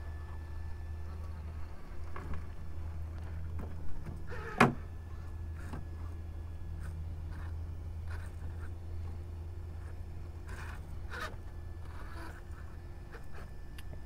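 Axial SCX-6 Honcho RC rock crawler's brushless motor and drivetrain running at crawling speed, a steady low buzz. A few clicks and knocks of chassis and tires on rock come through it, the sharpest about four and a half seconds in.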